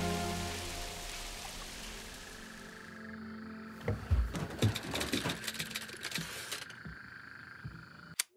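Film soundtrack: a sustained music score over steady rain fades out over the first three seconds. About four seconds in comes a run of bangs and crashes lasting about three seconds, a man smashing things inside a trailer.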